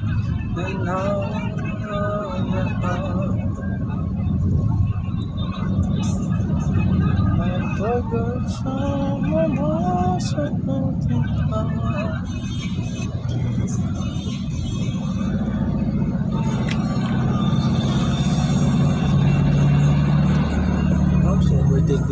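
Steady low rumble of a car driving on a highway, heard from inside the cabin, with music and a voice singing over it at times.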